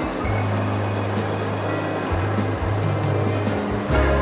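Water of a shallow stream running over stones, an even rushing noise, mixed with background music that holds a steady low bass note.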